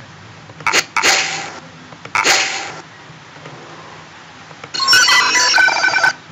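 Sound-effect previews played back from a video editor's library: two short hissy bursts early on, then an electronic bell ringing as a fast run of bright tones for the last second or so.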